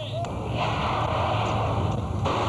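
Car tyres hissing through standing water on a wet skid pan, over a steady low engine hum. The spray hiss swells in about half a second in and holds.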